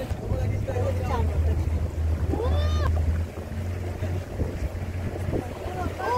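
A small motorboat's engine running with a steady low drone, with wind and water noise rushing past. A brief voice call rises and falls about halfway through.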